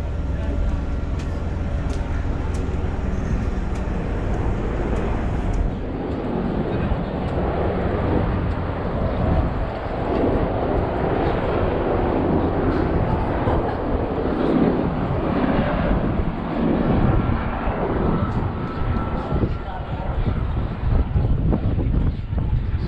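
Wind buffeting the microphone on an open flight deck, with indistinct chatter of people nearby.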